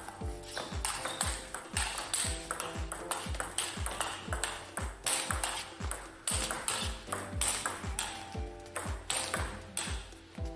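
Background music with a steady beat, over which the sharp pings of a table tennis ball striking bats and table during a rally are heard.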